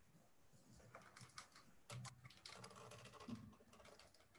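Faint, irregular clicks and taps of hands working at a desk, with a couple of soft thuds about two and three seconds in.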